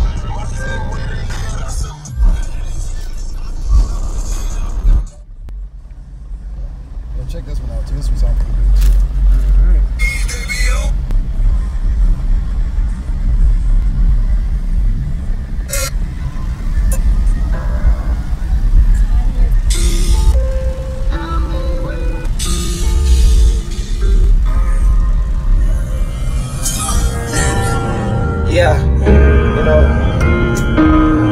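Bass-heavy music played loud through a car audio system with a single 12-inch subwoofer in the trunk of a 2016 Chrysler 200, heard from inside the cabin. Deep bass dominates; it drops out briefly about five seconds in, then builds back up to full level.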